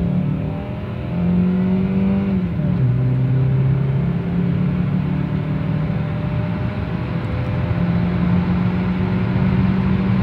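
The 2.2-litre four-cylinder engine of a 2000 Toyota Camry, heard from inside the cabin, pulling hard at high revs under full acceleration. About two and a half seconds in, its pitch drops as the transmission shifts up, then climbs slowly and steadily as the car gathers speed.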